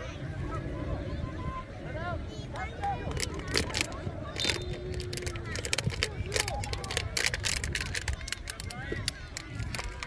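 Wind rumbling on the microphone over distant shouts and calls of players and spectators on an open field. A run of sharp clicks and taps comes through in the middle.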